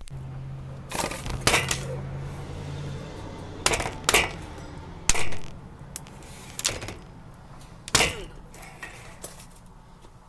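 A kitchen knife jabbed repeatedly into a laptop, giving about seven sharp knocks and cracks on its hard case at irregular intervals.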